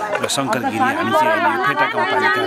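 Speech: voices talking, overlapping as chatter among several people.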